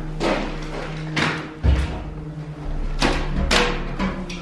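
A stuck wooden door being shoved and pulled, thumping about five times as it jams against a raised floor, one heavy low thud a little over a second in. Under it runs a steady low background music drone.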